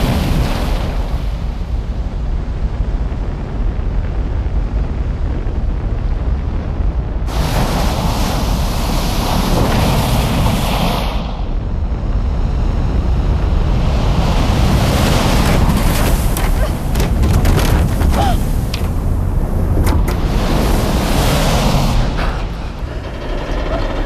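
Film sound design of a giant ocean wave: a loud, unbroken roar of rushing water over a deep rumble. It surges louder about seven seconds in and again through the middle and latter part.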